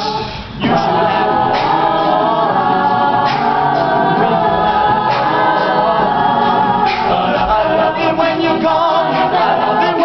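Mixed-voice a cappella group singing a pop song, a male lead out front over close vocal backing from the rest of the group. The sound dips briefly about half a second in, then comes back at full strength.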